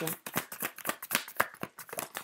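A deck of oracle cards being shuffled by hand: a quick, irregular run of light card clicks and flicks, about eight to ten a second.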